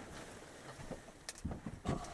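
Footsteps and body movement of a person walking up close, with a few low thumps and a couple of sharp clicks in the second half.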